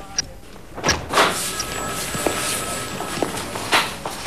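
A door is opened: a sharp click of the latch about a second in, a rush of noise while it swings open, and a sharp knock near the end.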